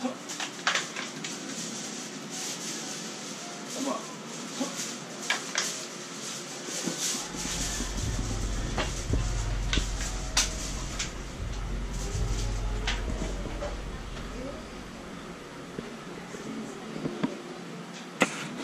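Soldiers' boots stepping and knocking on a tiled floor during a change of honour guard, as sharp scattered clicks, with a low rumble through the middle as one walks close past. Murmured voices underneath.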